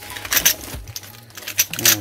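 Crumpled newspaper packing and plastic bags rustling and crinkling as a hand digs through a cardboard box, with light clinks from a bag of small test tubes being lifted out.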